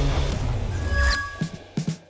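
Cartoon sound effects over background music: a rumbling laser-beam effect that cuts off about a second in, followed by a short bright chime.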